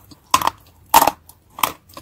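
Grey Turkestan clay being chewed, making crisp crunches: three loud ones about two-thirds of a second apart and a smaller one near the end.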